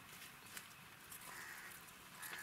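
Near silence: faint outdoor ambience with a few soft ticks and a faint high-pitched call about halfway through.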